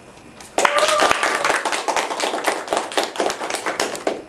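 Audience applauding, the clapping starting suddenly about half a second in.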